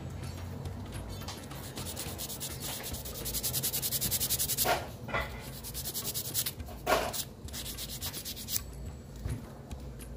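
A nail file rasping back and forth across a small piece of balsa wood, filing it down in quick, even strokes several times a second. The filing starts about two seconds in and stops shortly before the end, with two louder scrapes along the way.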